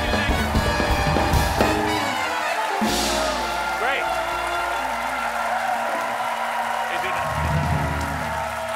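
Talk-show house band playing up-tempo, swing-style walk-on music. The beat drops out about three seconds in for a held chord, then comes back near the end.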